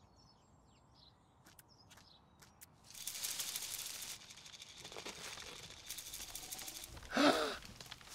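Near silence with a few faint clicks for about three seconds, then a soft rustling ambience. A brief voice-like sound with wavering pitch comes near the end.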